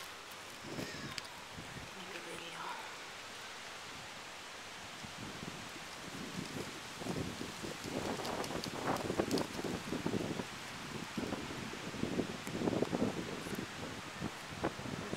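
Wind gusting and rustling leaves, with wind buffeting the microphone; the gusts get stronger about halfway through.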